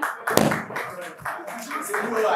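A single loud thump on a wooden table about a third of a second in, then clapping and tapping with voices in a small room.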